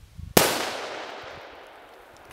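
A single .243 rifle shot from a Howa 1500 bolt-action rifle about a third of a second in, striking a can of shaving cream and bursting it. The report is followed by a long tail that fades over more than a second.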